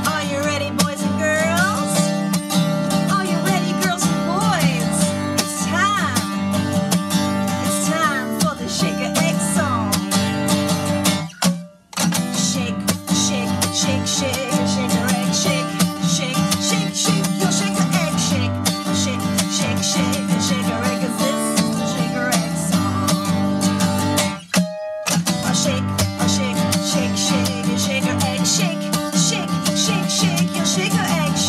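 Acoustic guitar strummed steadily while a woman sings, with two short breaks in the music about eleven and a half and twenty-five seconds in.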